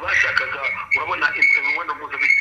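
A caller's voice talking through a mobile phone's loudspeaker held up to a microphone, sounding thin and telephone-like.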